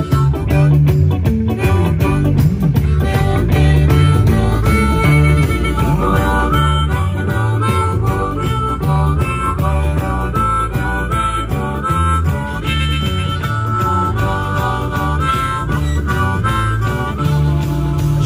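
Blues harmonica played cupped against a microphone, amplified, carrying the melody over a live band's electric guitars and bass.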